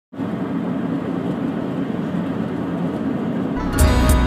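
Steady road and engine noise heard inside a moving car's cabin. Music with bass and a drum beat comes in near the end.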